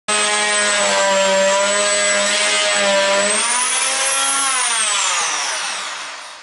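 Handheld electric saw running with a steady whine while trimming wooden flooring, its pitch rising about three seconds in, then winding down and fading out near the end.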